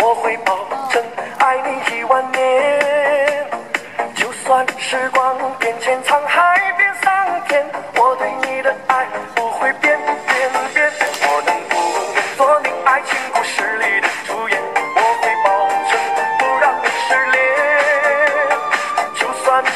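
Upbeat pop dance song with a lead singing voice over a steady, even beat.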